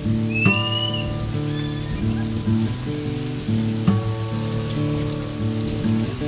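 Background music of sustained notes changing every half second or so, with a short rising whistle-like tone about half a second in. Under it is a light patter of water splashing.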